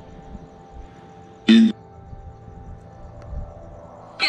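A Necrophonic ghost-box app plays through a small Bluetooth speaker: a low, steady electronic drone with faint held tones. About one and a half seconds in comes one brief, loud, voice-like blip. The investigators hear it as the app answering "yeah" to their yes-or-no question.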